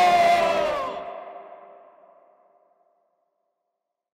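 A long shouted "oh", held for about a second, then dying away in an echoing tail over the next second and a half.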